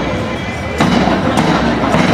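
Marching band drums, snare drums and a bass drum, beating, with sharp loud strikes about every half second from about a second in.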